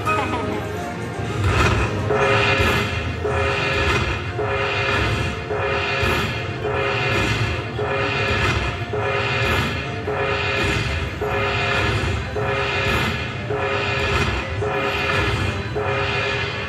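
Treasure Explosion slot machine playing its win-tally music as the bonus prizes count up on the credit meter: a short figure of tones repeating a little faster than once a second. It is the end-of-bonus payout count, played after the hold-and-spin free spins are completed.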